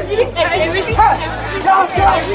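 People talking over background music with a steady deep bass line.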